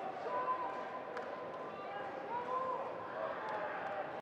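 Faint distant voices carrying across a large, near-empty football stadium over a low background hiss, with two light clicks, about a second in and near the end.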